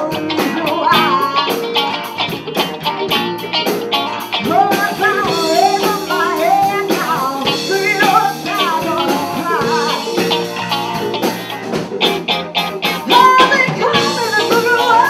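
Live blues band playing: a woman singing lead over electric guitars and a drum kit keeping a steady beat.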